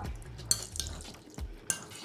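A spoon gently tossing cubes of raw ahi tuna coated in creamy spicy mayo in a glass bowl: soft, wet stirring with a few light clicks of the spoon against the glass.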